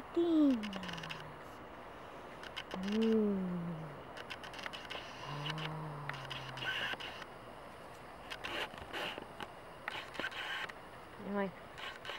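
A woman's drawn-out hummed 'mmm' sounds of pleasure at the scent of a gardenia. There are three hums: the first falls in pitch, the second rises then falls, and the third is low and level.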